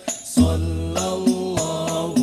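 Male vocal group singing sholawat in unison into microphones, amplified through a PA, with percussion hits marking the beat. The singing pauses briefly and comes back in about half a second in.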